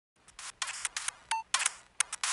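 Sound effects for an animated title: a quick run of short, crisp clicks and swishes, with a brief beep about two-thirds of the way through.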